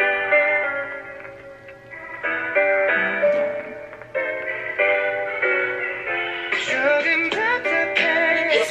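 Keyboard piano playing slow, held chords that change about every two and a half seconds, with singing coming in near the end.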